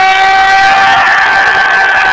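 Hockey arena's goal horn sounding one long, steady note over a cheering crowd.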